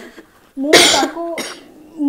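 An elderly woman coughing: one loud cough about two-thirds of a second in, then a shorter second cough.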